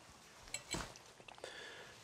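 Quiet room with a few faint clicks and a soft knock about three-quarters of a second in.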